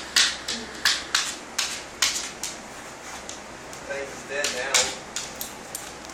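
A dog's paws and claws striking and clicking on a hardwood floor as it paws at a bee, a string of sharp taps that comes in two flurries with a pause between.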